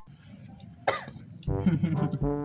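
A person coughs briefly about a second in, then a held musical note starts near the end, the first of a comedic edit's sound-effect notes.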